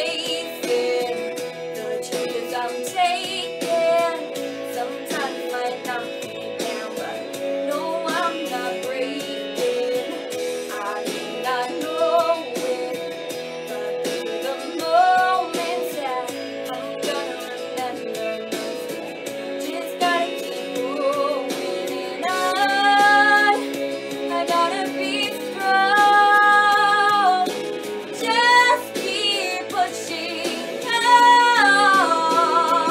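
A song: a young female singer over plucked guitar accompaniment, holding several long notes in the second half.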